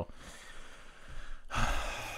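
A person sighing: a long breathy exhale, then a louder breath about one and a half seconds in.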